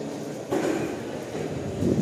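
Echoing murmur of spectators and band members in a large gymnasium, a low rumbling hubbub that swells about half a second in and again near the end.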